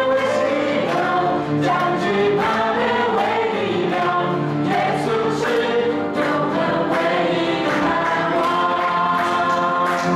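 A small group of male and female voices singing a Mandarin praise song into microphones, accompanied by acoustic guitar and piano. The singing and accompaniment run steadily without a pause.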